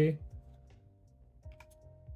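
Hockey trading cards being handled and slid from one to the next, a few soft clicks and ticks, over faint background music.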